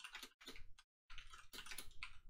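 Quiet typing on a computer keyboard: three quick runs of keystrokes with short silent gaps between them.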